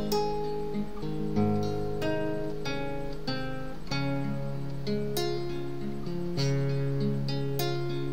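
Acoustic guitar played alone in an instrumental passage, plucked notes and chords ringing on. A new chord or bass note is struck every one to two seconds.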